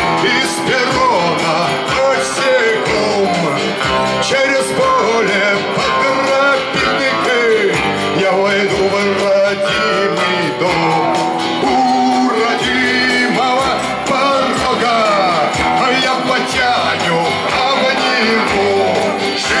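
Live song performed through a stage PA: a man singing to his own strummed acoustic guitar.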